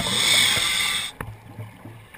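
Scuba regulator during an inhalation, heard underwater on the diver's camera: a hiss lasting about a second that cuts off abruptly.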